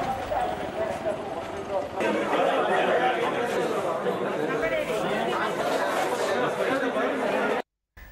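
Chatter of many people talking at once, an indistinct crowd babble with no single voice standing out. The sound shifts at a cut about two seconds in and stops abruptly just before the end.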